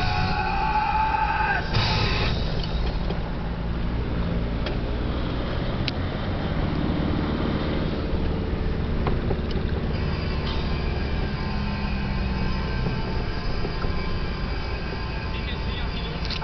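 Nissan Terrano II engine and tyre noise heard from inside the cab while driving on a snowy road, the engine note slowly rising and falling. Music is heard over the first two seconds or so.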